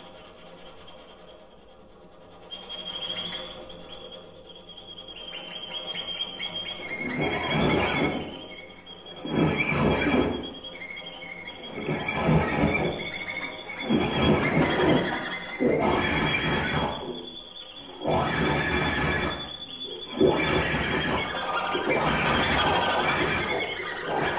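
Experimental duo music for cello and electric guitar, played with extended techniques: bowed cello, and guitar strings worked with a small object. It starts quiet, then turns into a series of rough, noisy swells about every two seconds over a thin steady high tone.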